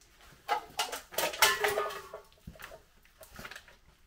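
A man laughing in a few short voiced bursts, ending in one longer held note, followed by a few faint knocks.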